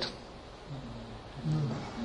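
A man's voice giving two short, low hums between phrases of speech, the second and louder one about one and a half seconds in, over faint room hiss.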